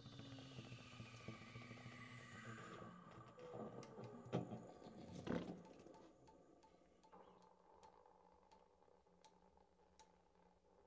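Quiet free-improvised reed-ensemble playing dying away: low held saxophone tones and faint falling high glides fade out about halfway through, with a few sharp clicks. It then settles to near silence with a faint steady hum and scattered small clicks.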